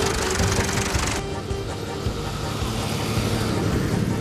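Background music with a steady melody, mixed with the running noise of a tractor. A loud hiss covers about the first second and stops abruptly.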